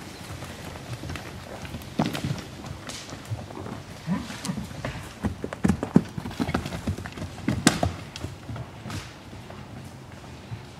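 Horses' hooves thudding irregularly on the forest floor as they move among the trees, with a few louder thuds about two, six and eight seconds in.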